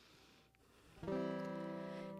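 Near silence for about a second, then one chord strummed on a plucked acoustic string instrument, ringing on and slowly fading as the opening of a song.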